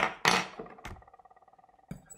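Metal kitchen utensils being handled on a tabletop: a sharp click and a short clatter, then a faint ringing with two more clicks, one just before a second in and one near the end.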